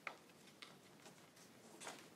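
Faint crackling of a stiff, pre-creased sheet of Stark origami paper being pressed and folded by hand: one sharp crackle just after the start, a lighter one about half a second in, and a longer rustle near the end.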